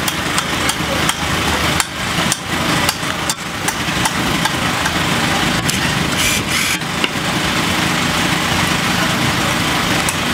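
Sharp knocks of a tool striking conch shells, a few a second in the first four seconds and only now and then after that. Under them an engine idles steadily throughout.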